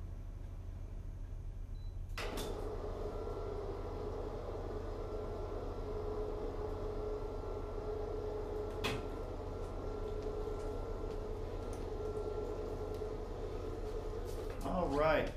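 Steady low electrical hum. About two seconds in, a click, and then a steady mid-pitched hum sets in, with another sharp click near nine seconds in.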